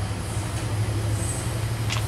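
Train carriages rolling past close by, with a steady low rumble and the hum of the oncoming diesel locomotive; a brief high falling squeak near the end.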